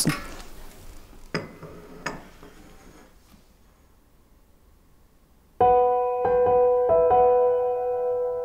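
Two light clinks of china coffee cups set down on saucers, then a few quiet seconds before piano music comes in with slow held chords that change every second or so.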